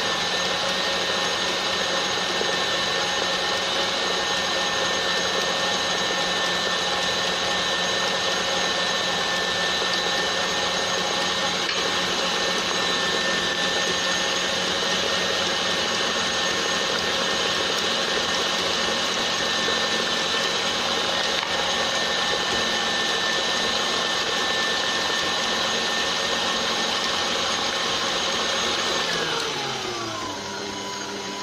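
Electric tilt-head stand mixer whisking a runny cake batter at high speed, its motor giving a steady high whine with the whisk running in the bowl. The whine holds one pitch throughout, then drops in pitch as the mixer winds down near the end.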